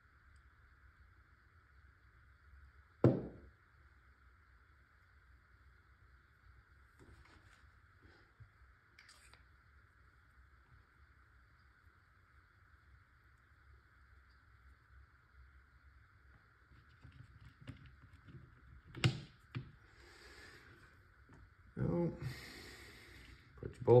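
Small parts of a Tippmann TiPX paintball pistol being handled and fitted by hand: a single sharp click about three seconds in, another sharp click near the end and a few small handling noises after it, over a faint steady hiss.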